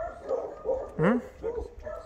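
A dog barking in a run of about five short barks, with people's voices around it.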